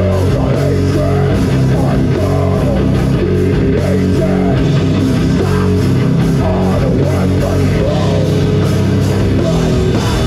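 Live death/doom metal band playing: distorted electric guitar, bass guitar and drum kit, loud and steady.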